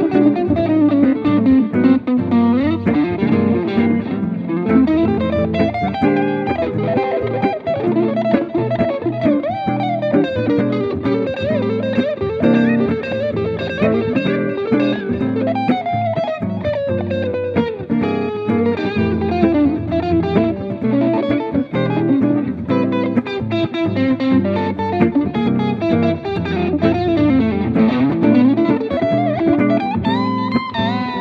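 Electric guitar playing a fast, continuous solo line, with many notes sliding and bending up and down in pitch over sustained low notes.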